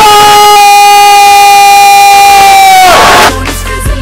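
A voice holding one long high note for about three seconds, then dropping in pitch and breaking off.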